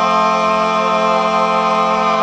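A man's voice holding one long sung note at a steady pitch, as a vocal warm-up.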